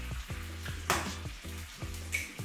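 Food sizzling in a frying pan on a hob, with a short louder hiss about a second in, over a background music track with a steady beat.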